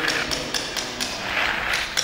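A paint sponge dabbing and rubbing on a concrete floor: irregular light taps, several a second, mixed with short scrubbing sounds.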